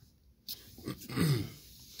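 A man clearing his throat: a short throaty sound about a second in, falling in pitch.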